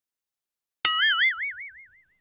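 Cartoon 'boing' sound effect: a sudden twang about a second in whose pitch wobbles up and down as it fades away.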